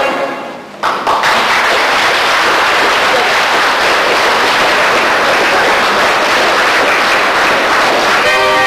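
Singing fades away, then an audience breaks into steady applause about a second in.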